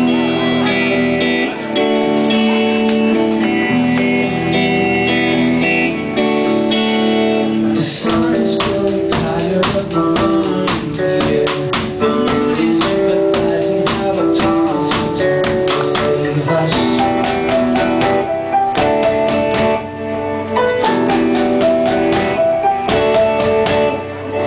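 Indie rock band playing live, amplified in a club. The song opens with sustained keyboard chords, and about eight seconds in the drums and electric guitar come in with a steady beat.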